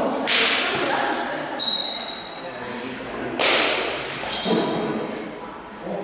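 Steel longswords clashing in a bind, with a high metallic ring from the blades starting a little over a second and a half in and a shorter ring after another contact about four seconds in. Hissing bursts of movement and footwork sound between the contacts, echoing in a large hall.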